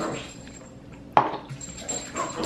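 A single sharp clack about a second in: a plastic cup being set down on the tabletop.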